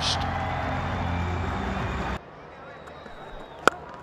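Stadium crowd noise that cuts off abruptly about halfway through. Near the end comes a single sharp crack of a cricket bat driving the ball hard.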